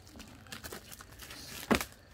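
Clear plastic shrink wrap on a cardboard power-tool box crinkling as it is handled and starts to be peeled off, with one sharper crackle near the end.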